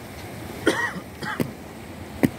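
Two short vocal sounds from a person, like brief coughs, one about two-thirds of a second in and another just past a second, over a steady wash of sea and wind noise.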